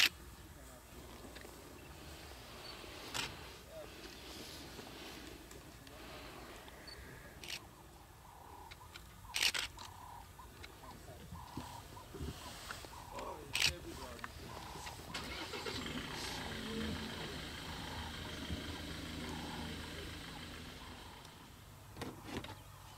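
Safari vehicle engine running, growing louder from about fifteen seconds in and dropping away shortly before the end, with a few sharp clicks and knocks before it.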